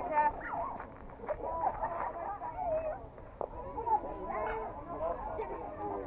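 Indistinct voices of players and spectators calling and chatting around a softball field, with a single faint click about three and a half seconds in.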